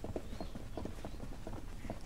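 Faint, irregular light knocks, several a second, over a quiet background.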